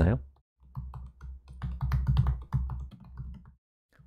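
Typing on a computer keyboard: a quick, uneven run of key clicks lasting about three seconds, stopping shortly before a voice resumes.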